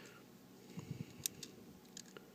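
Faint handling of small hard-plastic toy parts: a few light knocks and small clicks as pieces are turned over and fitted together, with one sharper click about a second and a quarter in.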